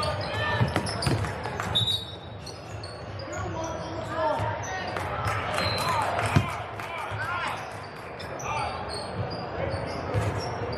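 Indoor basketball game sounds in a large, echoing gym: a basketball bouncing on the hardwood floor, sneakers squeaking and the voices of players and spectators. A short, high referee's whistle sounds about two seconds in, and play stops for a foul.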